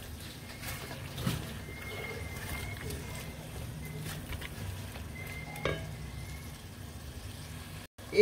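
Bottle gourd chunks in masala frying in an aluminium pot while a silicone spatula stirs them: a low sizzle with soft scrapes and taps of the spatula against the pot over a steady low hum. A faint thin high tone sounds twice in the background.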